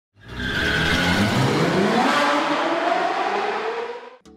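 Car engine revving up while the tyres squeal in a burnout, its pitch climbing steadily; it fades out near the end.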